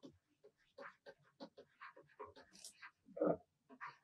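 Near silence: room tone, with one brief faint pitched sound about three seconds in.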